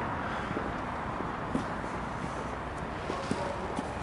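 Steady outdoor background noise, with a few faint clicks scattered through it.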